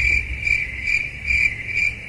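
Cricket-chirp sound effect: a steady high chirping in even pulses, about two a second, the comic 'awkward silence' gag laid over a punchline.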